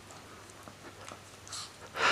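Small dog chewing and nibbling at a treat held in a person's fingers: scattered small crunches and mouth clicks. A louder burst of noise comes right at the very end.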